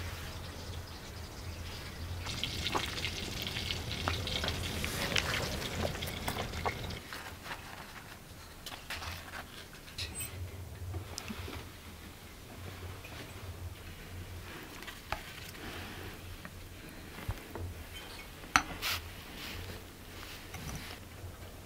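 A steady hiss for the first several seconds, then cutlery and bread clinking and tapping on ceramic plates as people eat at a table, with one sharper clink near the end.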